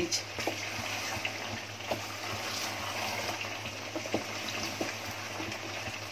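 Mutton curry simmering in a metal pot with a steady bubbling hiss as a wooden spoon stirs chopped coriander and mint through it, with a few light knocks of the spoon against the pot.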